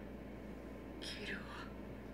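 A faint whispered voice from the anime's soundtrack: one short breathy utterance about a second in, falling in pitch, over a low steady hum.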